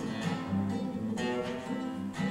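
Classical nylon-string guitar strummed in a steady rhythm, about two strums a second, playing a corrido accompaniment between sung lines.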